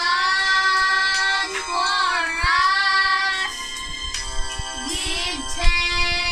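Two young boys singing together, holding long sustained notes, with one note dipping down and back up about two seconds in.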